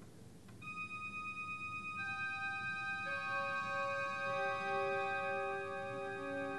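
Church organ on a soft, high registration. After a quiet first half-second, held notes enter one after another, each lower than the last, building into a sustained chord.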